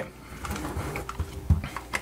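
Plastic parts of a Logitech G930 headset being handled: light rubbing and small clicks as the earcup is swivelled in its repaired arm bracket, with one sharper click about one and a half seconds in.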